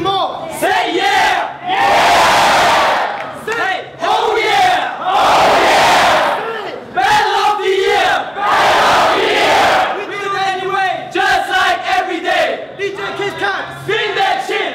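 A group of voices shouting together in three long, loud shouts of two to three seconds each, then a quicker run of shorter shouted calls near the end.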